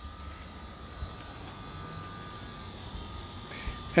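2019 Ram 1500 air suspension lowering the truck: a steady high whine over a low rumble, fading in the last second.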